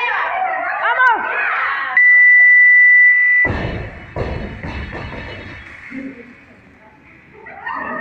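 Electronic workout timer sounding one long, steady high beep of about a second and a half as the countdown runs out, marking time up. A sudden heavy thud follows right after it.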